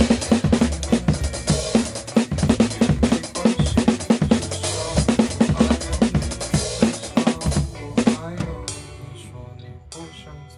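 Acoustic drum kit played live along with the song's recorded backing track: a busy groove of kick drum, snare and cymbals. About eight and a half seconds in, the loud drumming stops and the backing music carries on more quietly.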